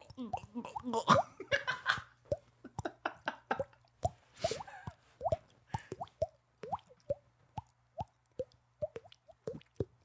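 Mouth-made water-drop sounds: a finger flicking against the cheek while the tongue and soft palate shape the mouth, making a string of short, hollow plops of varying pitch, irregularly spaced at about one or two a second.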